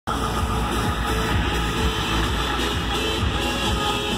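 Loud electronic dance music with a steady bass beat.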